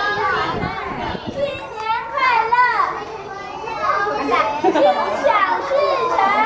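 Several young children's voices chattering and calling out at once, overlapping.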